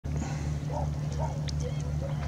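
A steady low motor drone that pulses about twice a second, with faint voices over it.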